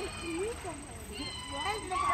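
Voices of people in and around a swimming pool: children calling out in high, wavering tones, rising to a louder cry near the end, over a steady low rumble.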